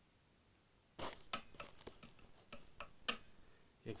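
A string of sharp mechanical clicks from the switch and knobs of an unplugged ESP LTD EC-256 electric guitar being worked by hand, starting about a second in, with light handling noise between them.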